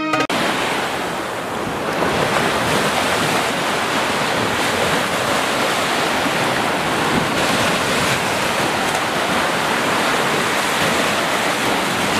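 Ocean surf breaking and washing up a beach: a steady rush of waves.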